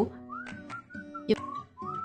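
Background music with a whistled melody: short sliding whistle phrases over steady held low notes, with a few light percussive ticks.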